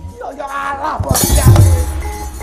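Javanese gamelan accompaniment for wayang kulit: a voice cries out, then about a second in a sudden loud metallic crash, the dalang's kecrek plates struck together with a deep drum stroke, the loudest moment, with metallophone tones ringing on after it.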